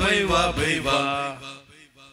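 A man singing the last phrase of a Hindi song with electronic keyboard accompaniment, his voice gliding on the final note and then fading out about a second and a half in.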